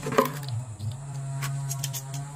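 Plastic bottle being set down and handled on a table: a sharp knock just after the start, then a few light clicks, over a steady low hum.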